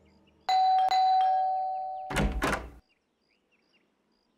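Doorbell chime: a high note rings twice, then a lower note follows and fades away. Two heavy thuds at the wooden door come just after it.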